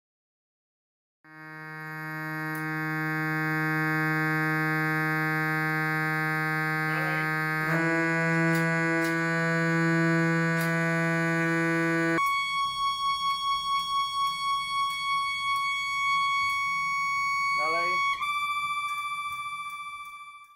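Organ reed pipes being tuned, each sounding a long held note rich in overtones. A low note shifts slightly in pitch about halfway through. A higher note then wavers about three or four times a second, the beating of a reed out of tune, until near the end its pitch is nudged slightly up and the wavering stops. A brief sliding sound comes just before each pitch change.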